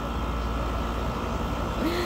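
Steady low rumble with an even hiss of background noise, no distinct events.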